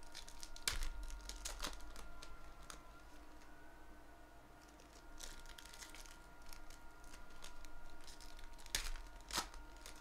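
Foil wrapper of a 2017 Panini Phoenix football card pack crinkling and tearing as it is opened by hand. Sharp crackles come about a second in and twice near the end, the last two the loudest, with softer rustling between.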